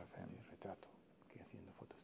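Faint whispered speech: an interpreter whispering a translation in a low voice.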